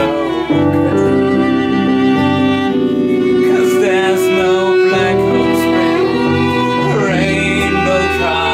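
Instrumental passage of a small acoustic band: nylon-string acoustic guitar and hollow-body electric bass under bowed strings (cello and violin) holding long notes, with a few sliding phrases.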